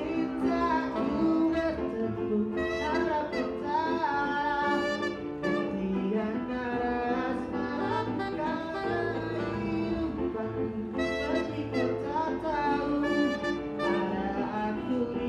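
Alto saxophone playing a bending melodic line over sustained electric keyboard chords and a bass line, in a small live band arrangement of a disco-pop song.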